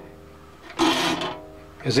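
A three-corner file drawn once across a hand saw's teeth, a rasping stroke about three-quarters of a second in and lasting about half a second, sharpening one tooth and the front of the next. The steel saw blade rings with a steady tone that carries on between strokes.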